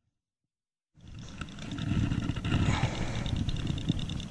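After a second of silence, a low rumbling noise on the microphone, loudest a couple of seconds in, with a high-pitched pulsing animal chorus running steadily behind it.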